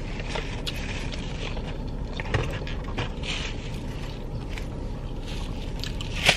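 Steady low rumble inside a car's cabin, with a few faint clicks and rustles.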